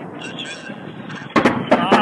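Weapons fire during combat around a steel works: three sharp reports in quick succession about halfway through, over a steady background noise.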